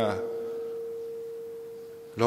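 A steady, pure, mid-pitched tone that holds one pitch without change, heard bare in a pause between words. The tail of the last spoken word fades out just at the start.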